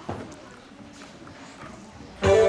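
Quiet hall with faint knocks and shuffling, and one sharper knock right at the start.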